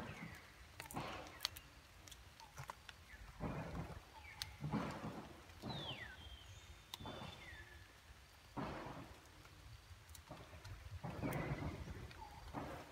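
Wet forest ambience: scattered drips and clicks and bursts of rustling leaves over a low rumble, with a few short high calls that slide down in pitch, the clearest about halfway through.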